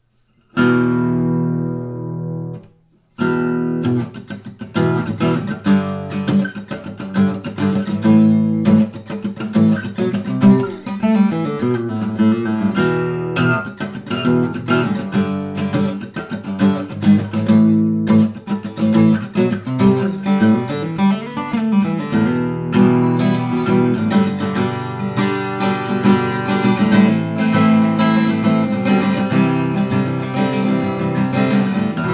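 Jean-Marc Burlaud orchestra-model acoustic guitar with a spruce top and walnut sides being played. One chord rings for about two seconds and is damped, then continuous playing of plucked notes and chords follows.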